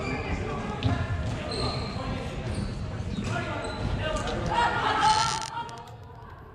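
Game sounds in a large sports hall: sharp knocks of ball or puck and sticks among players' shouts, with a louder shout near the end.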